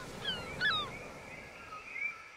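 Birds calling in short, high, falling chirps, several in the first second and fainter ones later, over a faint outdoor hiss.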